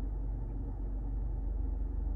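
Steady low hum of a 2022 Subaru Outback Wilderness running while parked, heard inside the cabin.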